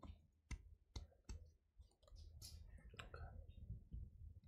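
A few faint, isolated clicks of computer keyboard keys, about five at irregular spacing, with a soft breathy hiss about halfway through.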